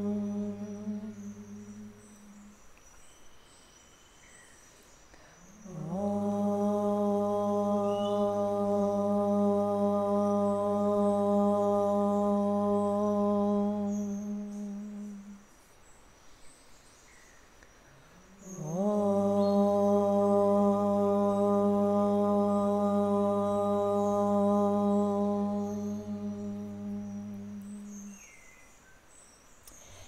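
A woman chanting om at a steady pitch: the end of one om fades out about two seconds in, then two more long oms of about nine seconds each follow. Each opens with a short upward slide into the "o" and closes on a hummed "m".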